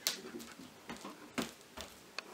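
A metal ice cream scoop clicking and tapping against a plate, about five short sharp clicks, the loudest about halfway through.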